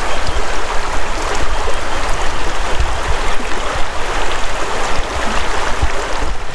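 Shallow creek rushing steadily over rocks and boulders, with a low rumble underneath.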